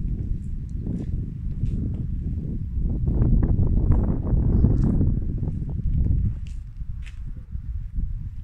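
Footsteps on a paving-stone floor, with rumbling handling noise on the phone microphone as it is carried around the car; scattered light clicks among the steps.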